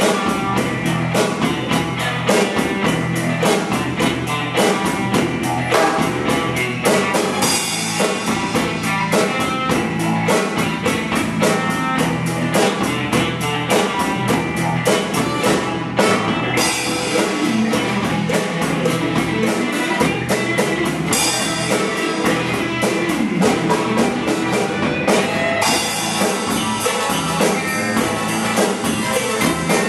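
A Taye drum kit played in a steady rock groove, hi-hat and snare strokes coming several times a second, along to a recorded backing track with guitar.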